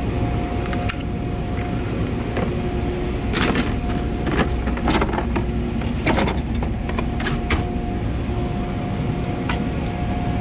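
Plastic socket-set case being closed and handled in a metal tool-chest drawer: a string of clicks, knocks and rattles of plastic and metal, the sharpest few between about three and a half and seven and a half seconds in. Under it runs a steady background hum with a faint steady tone.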